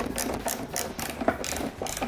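Hand screwdriver driving a wood screw into a plywood panel, its ratchet clicking in quick short strokes, about three or four clicks a second.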